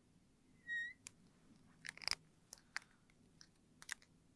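A short squeak of a marker pen on a glass board, then a series of small sharp plastic clicks and taps as marker pens are handled and capped.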